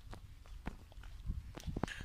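Footsteps crunching and scuffing on a dirt path covered in dry straw: several irregular steps.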